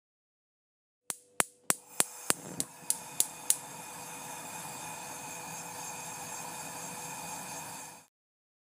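Channel logo sting: about nine sharp clicks, roughly three a second, that run into a sustained sound with a few steady tones over a hiss, which holds and then cuts off suddenly near the end.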